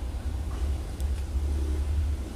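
Low, steady background rumble with one short click about a second in.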